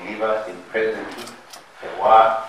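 Speech only: a voice talking in short phrases, with a brief pause near the end.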